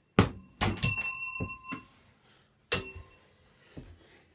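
Pieces of improvised metal junk percussion being struck: two sharp hits in the first second, the second leaving a bell-like ring that lasts about a second, then a few lighter taps and another sharp ringing hit near three seconds in. A duller knock follows near the end.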